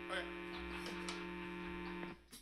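Steady electrical mains hum and buzz from the band's still-switched-on guitar amplifiers, left hanging after the last chord has died away, with a few faint clicks.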